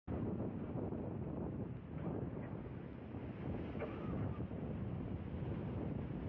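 Steady rushing of a fast, muddy floodwater torrent, with wind buffeting the microphone.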